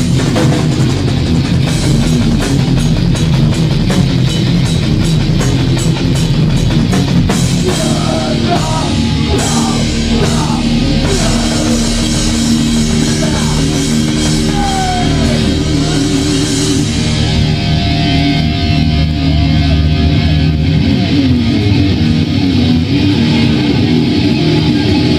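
Hardcore punk band playing live and loud, with distorted electric guitar and drum kit. The drumming is fast and busy through the first half; after that the guitars hold long, ringing chords.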